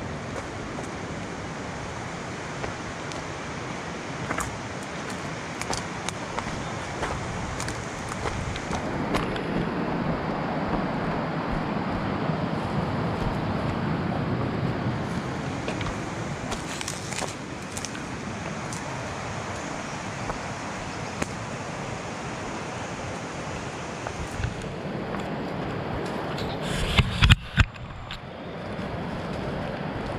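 Footsteps crunching over dry leaves, twigs and stones on a woodland path, with scattered snaps and clicks over a steady rushing background noise. A few loud knocks come close together near the end.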